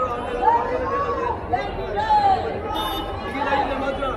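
Crowd of people talking at once: a dense babble of overlapping voices, with a few louder calls standing out of it.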